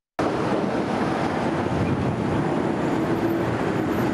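Steady outdoor background noise: a dense, even hiss with a faint low hum. It cuts in abruptly just after a moment of silence.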